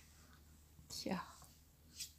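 Quiet room with a single short, breathy voice sound about a second in, its pitch falling.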